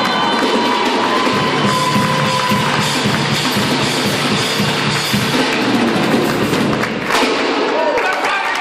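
A song played on an electronic keyboard and sung by a vocal group ends on a held note. About two seconds in, an audience starts cheering and clapping loudly, and this carries on over the last of the music.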